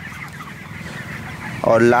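Faint calls of a flock of young broiler chickens, with a man's voice starting near the end.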